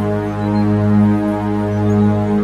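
Meditation music: a sustained electronic drone on G-sharp at 207.36 Hz, with a tone an octave below and a stack of overtones above, swelling gently in level.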